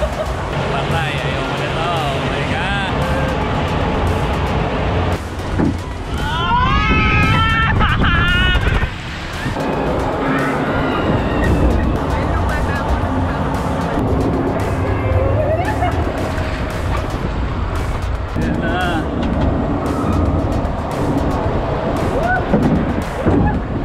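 Background music with a singing voice. The voice slides up and down in pitch most clearly about six to eight seconds in, over steady held notes.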